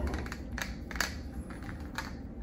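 Small plastic clicks and taps as a 30 mL syringe is fitted onto a port of an exchange-transfusion stopcock shuttle set, with a few sharp clicks: one about half a second in, one about a second in, and one near the end.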